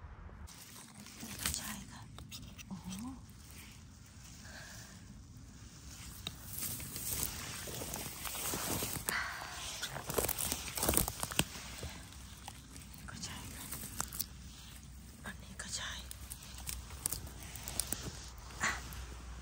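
Rustling and crunching of dry bracken, grass stems and pine-needle litter as someone walks and pushes through the undergrowth, a run of sharp crackles and snaps, loudest around the middle.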